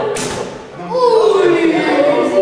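A single short thump as an arrow is shot from a recurve bow, the string released from full draw. Voices follow about a second in.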